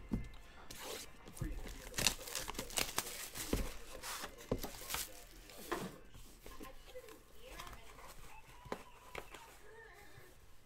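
Plastic shrink-wrap being torn and crinkled off a sealed trading-card box, with sharp rustles and clicks of plastic and cardboard being handled. The noise is densest in the first half and quieter toward the end.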